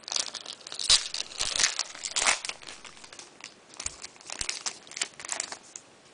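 A trading-card pack's wrapper being torn open and crinkled by hand, in a run of irregular crackles that is loudest in the first couple of seconds and thins out toward the end.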